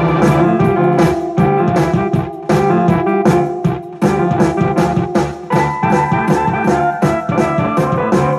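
Casio CTK-7200 electronic keyboard played with both hands, chords and melody in a piano-like voice over a drum accompaniment.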